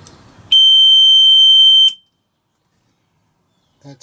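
Johnson Pump Bilge Alert high water alarm sounding one steady, high-pitched beep for about a second and a half, starting half a second in, then cutting off abruptly. It is the alarm's warning that its bilge sensor is wet.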